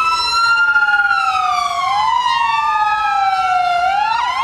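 Two police vehicle sirens wailing at once, each slowly rising and falling in pitch out of step with the other, so the two tones cross.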